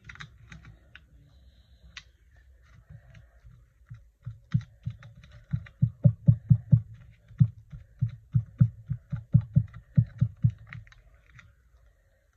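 A quick run of soft taps and knocks from hands working paper pieces against the journal and tabletop, about three to four a second, starting about four seconds in and stopping shortly before the end.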